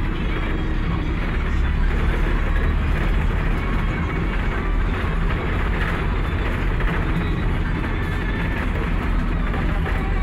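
Steady low rumble of engine and road noise heard from inside the cabin of a moving vehicle.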